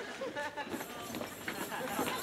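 Low background chatter of several people with footsteps on a hard floor as a group walks in.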